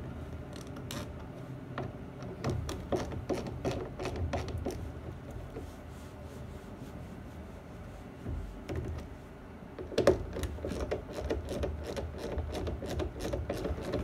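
Small hand ratchet with a T25 Torx bit clicking in quick runs as screws are backed out of a plastic engine airbox cover. The clicks come in two runs, a few seconds in and again more densely from about ten seconds on.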